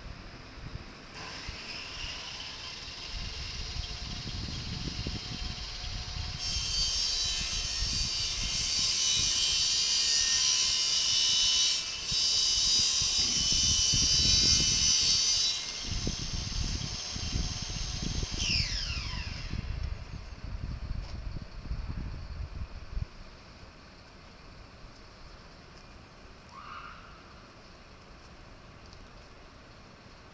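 Fire engine's diesel engine running as it pulls up and stops, with a long loud hiss partway through that breaks off briefly and then cuts out. A whine falls away soon after, and the engine rumble stops, leaving quiet street background.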